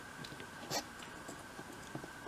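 Faint fingertip handling noises as a tiny miniature jar is pressed into place on a dolls-house shelf, with a light tap about three-quarters of a second in.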